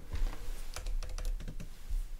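A few quick, soft clicks of computer keyboard keys, scattered irregularly through a pause in speech.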